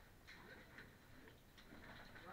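Near silence with a few faint clicks and scrapes of cavers and their gear moving against rock.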